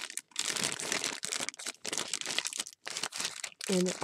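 Thin clear plastic bags crinkling in irregular bursts as wood-mounted rubber stamps are handled inside them.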